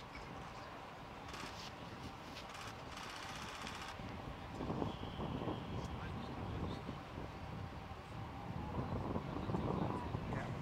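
Outdoor training-pitch ambience: distant, indistinct voices of players calling and talking over a steady background hiss, with a few sharp clicks in the first half.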